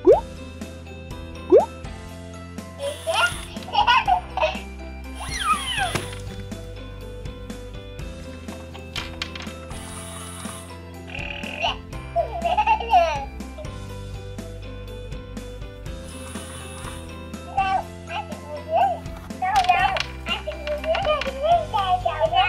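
Toy crib mobile playing a children's tune, steady held notes with phrases of a high, childlike singing voice coming and going.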